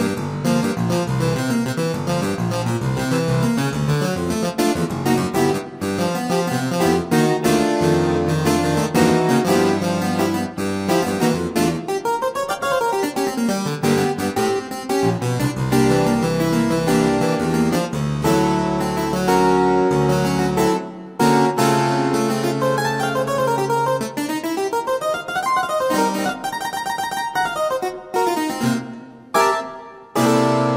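The Harpsi-Clav patch of the IK Multimedia Philharmonik 2 virtual instrument, a sampled harpsichord played on a MIDI keyboard, with a little soft attack to its notes. It plays chords and melodic lines, with fast runs up and down the keyboard about midway through and again near the end.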